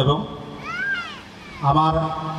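A short animal call that rises and then falls in pitch, about half a second long and heard in a gap between phrases of a man speaking into a microphone.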